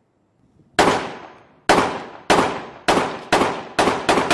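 Gunfire: six single shots at uneven spacing, about half a second to a second apart, each trailing off in a long echo.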